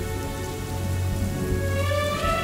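Film background score: soft sustained notes held over a low steady drone.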